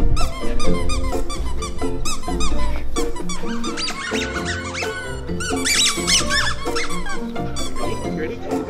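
Squeakers in a giant plush snake dog toy squeaking again and again, with a quick run of squeaks about four to six seconds in, over background music with a steady beat.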